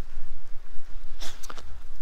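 A low rumble on the microphone of a handheld camera, with a short breath about a second and a quarter in, just before the speaker talks again.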